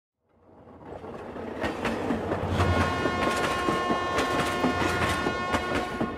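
Train sound effect: a train rolling with a low rumble and irregular rail clicks, fading in at the start. A steady train horn begins blowing about two and a half seconds in and keeps sounding.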